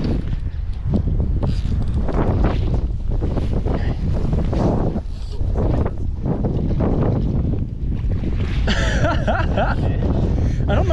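Wind buffeting the microphone: a loud, steady low rumble throughout, with faint voices under it.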